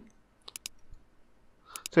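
A few sharp computer mouse clicks: two close together about half a second in, and two more near the end.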